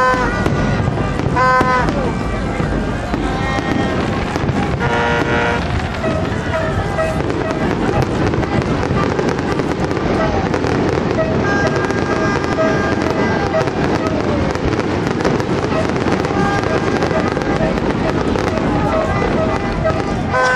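Aerial fireworks display: a continuous run of bursting shells, bangs and crackles, with crowd voices among them.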